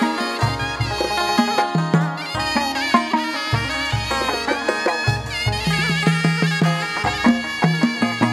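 Live chầu văn ritual music from the hầu đồng band: a melody that glides in pitch over deep bass notes changing about once a second, with percussion.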